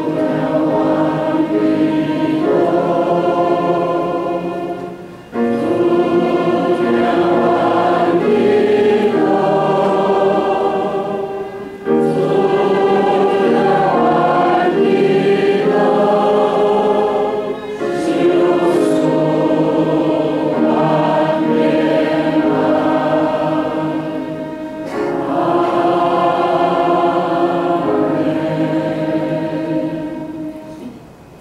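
Church congregation singing a hymn in Taiwanese Hokkien with piano accompaniment. The singing comes in phrases of five or six seconds with short breaks between them.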